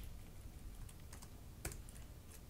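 A few faint computer keyboard keystrokes, scattered and unhurried, the loudest about one and a half seconds in.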